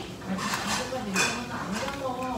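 Metal spoon stirring noodle soup in a large stainless steel bowl, scraping and clinking against the metal. The loudest clink comes about a second in.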